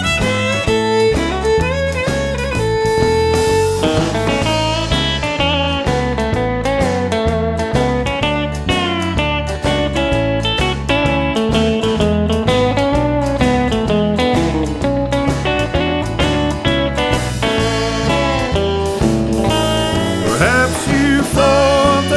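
Instrumental break of a country song: a lead guitar plays a melody over bass and a steady beat. Near the end the notes waver and bend.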